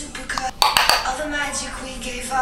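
Clicks and clatter of makeup items being handled, such as a plastic powder compact, in a quick cluster about half a second to a second in.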